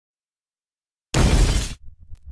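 After a second of silence, a sudden loud, noisy crash lasting just over half a second, heavy in the low end.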